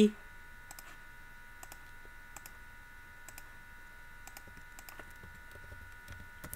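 Sparse, faint computer keyboard clicks, single and in quick pairs, as an equation is typed, over a steady faint electrical hum.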